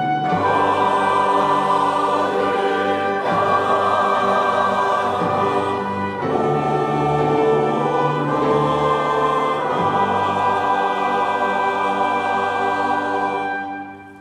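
Large mixed church choir singing a Korean hymn anthem in Korean with an orchestra of strings and brass, held at a steady full level; the music stops just before the end.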